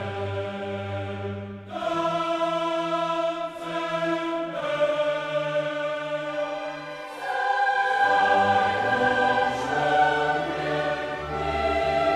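Orchestral classical music playing slow, sustained chords that change every couple of seconds, swelling fuller and louder about eight seconds in.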